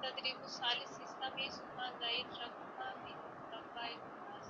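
Faint, indistinct speech in short fragments over a steady background hiss.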